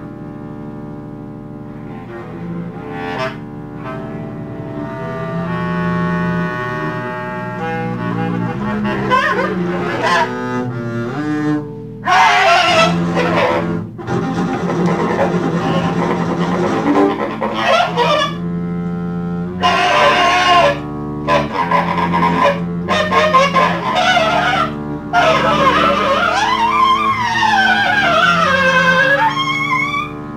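Free-improvised jazz duet of bowed double bass and saxophone. The bass holds long bowed tones, and from about halfway the playing turns louder and harsher, with pitches sliding up and down near the end.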